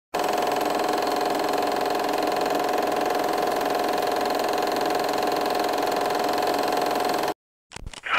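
Film projector running, a steady fast mechanical clatter and whir that cuts off suddenly near the end. It is followed by a couple of sharp clicks from a cassette recorder's play key being pressed.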